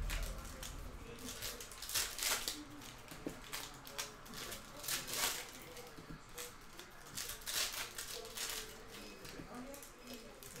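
Trading cards being handled: slid off a pack, flicked through in the hands and laid on a stack, a run of short papery swishes and flicks that come irregularly about once or twice a second.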